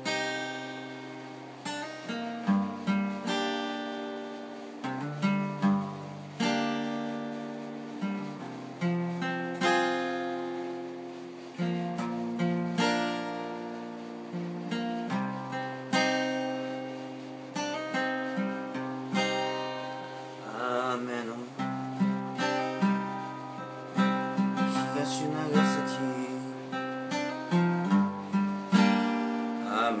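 Acoustic guitar playing chords, a mix of strummed and picked notes with a moving bass line, in an instrumental passage of a song.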